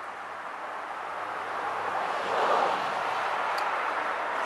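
A steady outdoor hiss that swells louder about two seconds in and then holds.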